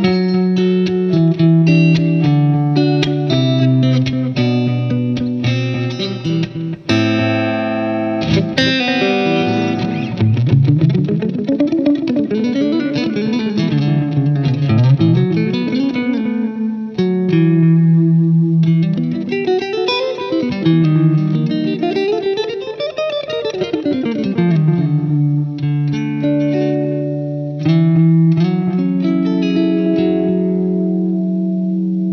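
Strandberg Sälen Deluxe headless electric guitar played solo: picked notes and chords, with fast runs climbing and falling in pitch through the middle.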